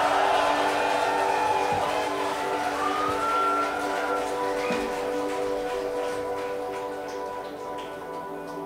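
A live rock band's final chord ringing out as a drone of held tones from amplified guitars and keyboards, slowly fading, with a short gliding tone about three seconds in.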